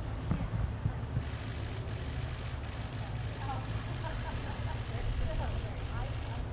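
Outdoor ambience: a steady low rumble with faint, distant voices talking, and a few soft knocks in the first second or so.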